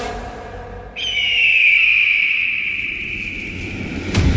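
Electronic music fades out over the first second, then a single high, whistle-like synthesized tone starts suddenly and holds, sliding slightly down in pitch until the end.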